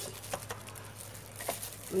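A few faint, light knocks of a wooden stirring stick against a plastic tub of dissolved caustic soda, over a low steady hum.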